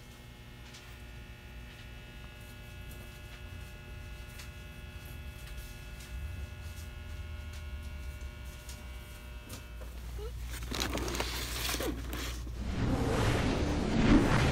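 Steady electrical hum made of several held tones over a low rumble, slowly growing louder. About ten seconds in, louder rushing and crackling noise comes in and builds near the end.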